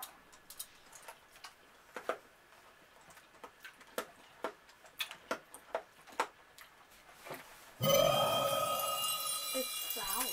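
Hard, compressed sour candy tablets being crunched and chewed, heard as scattered sharp clicks. Near the end a loud added sound effect comes in, with several held tones over a hiss.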